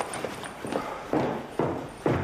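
A few footsteps of a person walking across a room, coming about half a second apart.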